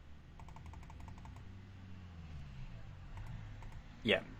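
Computer keyboard typing: a quick run of about ten light key clicks about half a second in and a few more near the end, over a low steady hum.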